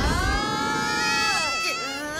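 Cartoon characters straining together in a long, drawn-out effort cry as they haul on the cables, the held pitch sagging near the end before another cry rises. A low rumble sits under the start.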